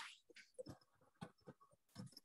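Near silence, with a few faint, very short clicks and blips.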